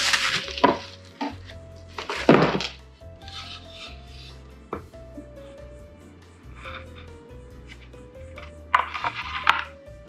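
Plastic film and bubble wrap crinkling and rustling in bursts as a solid-wood game board is unwrapped, with a few sharp knocks of the wood. Quiet background music with a simple stepping melody plays underneath.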